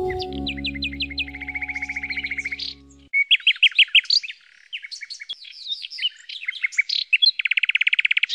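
A canary singing, a rapid series of chirps and rolling trills ending in a long fast trill, with held background music notes underneath that stop about three seconds in.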